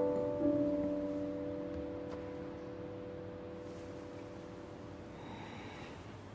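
Soft background piano music: a chord is struck just under half a second in and slowly dies away, leaving only a faint hush.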